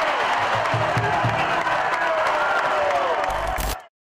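A crowd cheering and clapping, with shouts and whoops, over background music, cutting off abruptly just before the end.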